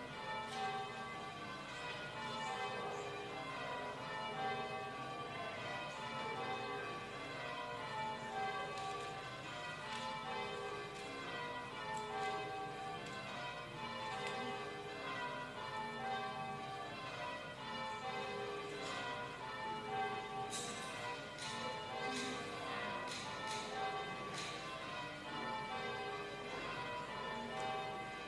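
Church bells being rung in changes: a ring of bells sounding one after another in an even, repeating sequence, row after row.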